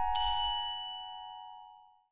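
A logo jingle's last notes: keyboard tones ringing on, joined just after the start by a bright bell-like ding, all fading away to silence over about two seconds.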